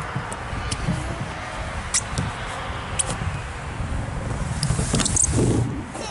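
A toddler sliding down a plastic playground slide: a steady low rubbing rumble with a few light clicks, a little louder near the end.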